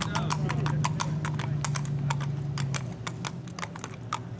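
A ridden horse's hooves striking an asphalt road in a quick, closely spaced run of sharp hoofbeats. A steady low hum runs underneath and stops about three-quarters of the way through.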